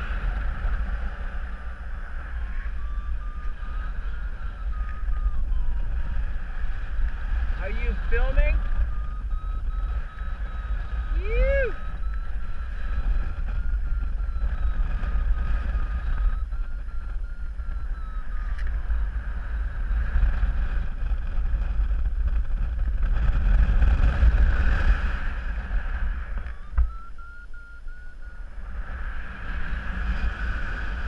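Airflow buffeting the microphone during a paraglider flight: a steady low rumble of wind noise that swells louder about 23 to 26 seconds in. A faint wavering high tone runs beneath it, and a few short rising-and-falling chirps come at about 8 and 11 seconds.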